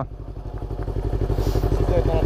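Motorcycle engine idling with a steady, rapid pulse that slowly grows louder.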